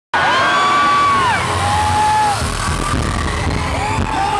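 Live pop concert heard from among the audience: voices hold long high sung notes that slide up into each note and fall away at the end, over the band's heavy bass beat.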